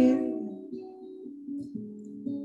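A woman's sung note fades out, then an acoustic guitar carries on softly with single plucked notes, one after another, as a quiet accompaniment between sung lines.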